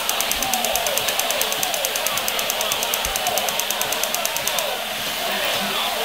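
A rapid, even rattle of about nine clicks a second that stops about four and a half seconds in, over wavering, voice-like gliding sounds.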